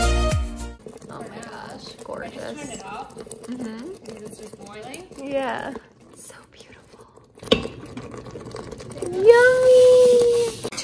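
Background music that cuts off within the first second, then low, indistinct voices murmuring, with a single sharp knock about two-thirds of the way through and a drawn-out voiced sound, rising then held, near the end.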